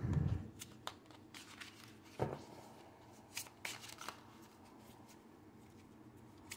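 A deck of oracle cards shuffled by hand: soft rustling and scattered sharp card snaps, the loudest a little over two seconds in, growing sparser toward the end.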